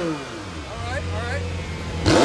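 McLaren 720S twin-turbo V8 through its stock sport exhaust, revs falling away from a throttle blip and settling into a steady idle.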